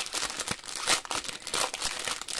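Clear plastic packaging of diamond-painting drill packets crinkling in the hands as the bag is worked open: a dense, irregular crackle.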